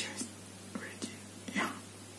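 A woman's soft breaths and whispered mouth sounds in a pause between spoken phrases: four or five short, breathy bits with hardly any voice, over a faint steady low hum.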